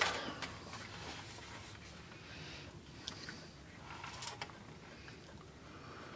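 Quiet room tone with a few faint clicks and soft handling noises.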